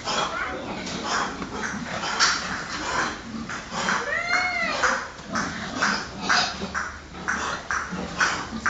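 Domestic pigs grunting, a rough call every half second or so, with one short rising-and-falling squeal a little past four seconds in.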